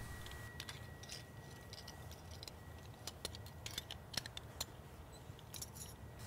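Faint, scattered metallic clicks and clinks of carabiners, a pulley and an anchor plate knocking together as they are handled and clipped at a rope-rescue anchor.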